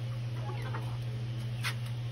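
Faint peeps and clucks from young chickens in a wire kennel over the steady low hum of an electric fan, with a brief scratchy sound near the end.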